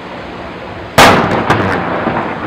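A single blank shot from a small salute cannon fired aboard a three-masted schooner: one sharp, loud bang about a second in, followed by a rolling echo with a few fainter cracks.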